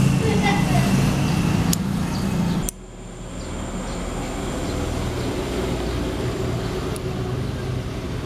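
Outdoor background noise with a low rumble and indistinct voices, which drops abruptly about three seconds in to a quieter, steadier noise with a faint high whine.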